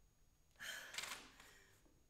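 A woman's sharp, breathy gasp, starting about half a second in and lasting about half a second.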